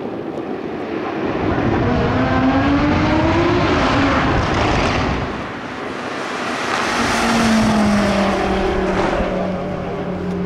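Audi RS3's turbocharged five-cylinder engine driving by in limp mode after a blown driveline coupler. The engine note rises as the car comes on, eases off about five seconds in, then swells again with a slowly falling pitch as it goes past.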